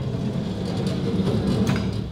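The sliding side door of a 1995 VW T4 Westfalia rolls open along its track, its rollers making a steady rumble, with a click near the end as it stops. The track and rollers are not yet greased.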